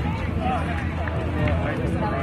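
Indistinct voices of several people talking and calling out, over a steady low rumble.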